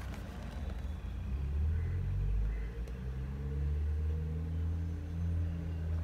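A low, steady rumble with a faint hum whose pitch drifts slightly.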